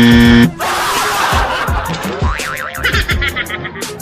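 Music with a steady beat and electronic sound effects: a loud, steady horn-like buzzer tone that cuts off about half a second in, then warbling, wobbling tones a couple of seconds later.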